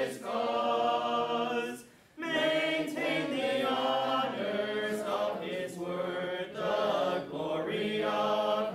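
Choir singing unaccompanied in held notes, with a short break about two seconds in.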